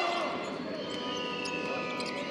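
A basketball bouncing on a hardwood court amid the voices of an arena crowd.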